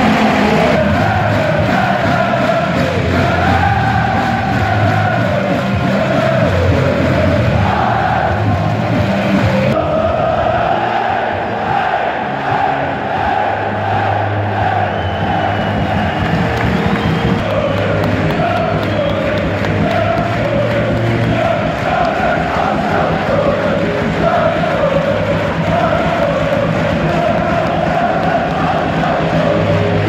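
A stadium football crowd singing and chanting together, mixed with background music that has steady bass notes; the sound changes abruptly about ten seconds in, like an edit.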